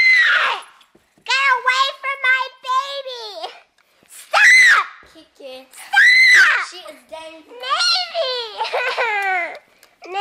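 A young girl screaming shrilly three times, with stretches of fast, squeaky high-pitched jabbering between the screams.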